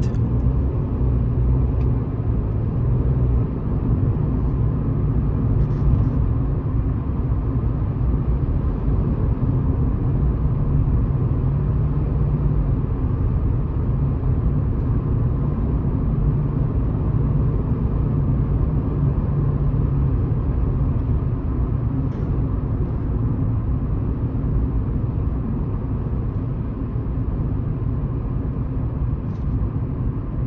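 Steady road and tyre noise with a low engine hum inside a car cabin, cruising at about 70 km/h.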